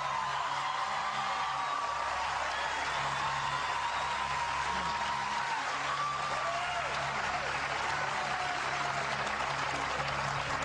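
Game-show studio audience applauding with some scattered voices, steady throughout. A low, sustained music bed runs underneath: the show's lifeline countdown underscore.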